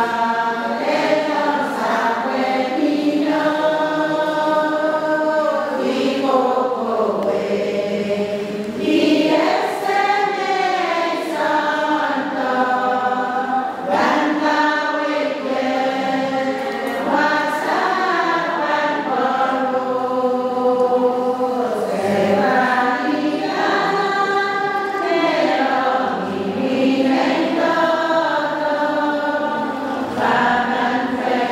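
Two women singing a hymn together from hymnals, without instruments, their voices sustained in a slow, continuous melody.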